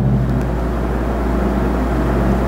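Steady low hum with a hiss of background noise, unchanging throughout, with no distinct events.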